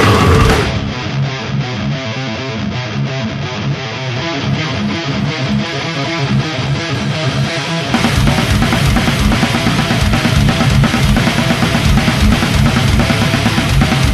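Instrumental death metal passage with guitars and drums and no vocals. Less than a second in, the sound thins to a narrower, bass-less riff with rapid, even strokes. About eight seconds in, the full band with heavy low end comes back in louder.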